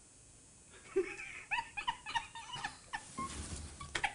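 Stifled laughter: a quick run of short, high-pitched, squeaky giggles starting about a second in, fading near the end.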